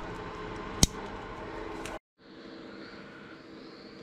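A single sharp click as the RJ45 plug of a CAN cable snaps into an inline joiner, over a faint steady hum. After about two seconds that background cuts off and a fainter steady hum follows.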